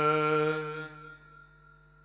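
A voice chanting Gurbani holds the last note of a line, steady in pitch, then fades out about a second in. A faint steady hum follows.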